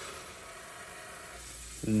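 Water-cooled lapidary band saw cutting through an agate nodule: a steady hiss of the blade and its water spray grinding through the stone.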